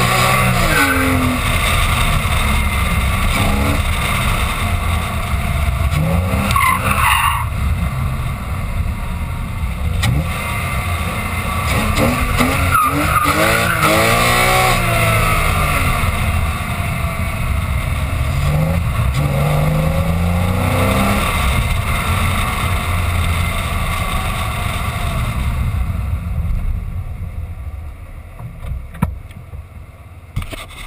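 Porsche Boxster S flat-six engine pulling up a winding hill road under heavy tyre and wind noise. Its revs rise and fall several times as it accelerates and eases off. Near the end the sound dies down as the car slows to a stop.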